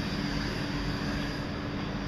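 Steady electric train hum: constant low droning tones over an even background noise, with no horn and no change in level.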